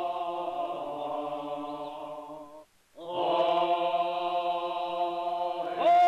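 A group of voices chanting a Tsou ceremonial song in long, steady held notes. The chant breaks off briefly near the middle and resumes, and near the end a voice slides up into a louder sustained note.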